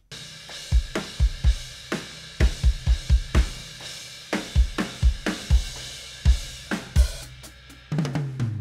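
Playback of a multitracked acoustic drum kit recording, an edited comp of drum takes being auditioned: kick drum and snare hits, with quick runs of kick strokes, under a steady wash of cymbals. It starts abruptly.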